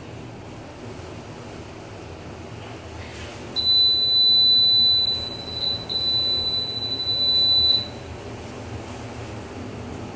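Schindler passenger lift's electronic beeper sounding a high, steady beep for about four seconds, broken briefly in the middle, as the car arrives at its floor. A low steady hum from the moving lift car runs underneath.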